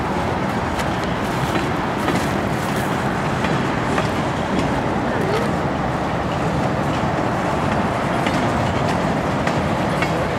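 Freight train cars rolling past on the rails: a steady rumble of wheels on track with faint, irregular clicks.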